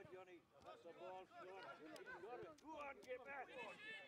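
Faint shouting and calling of voices on a football pitch during live play.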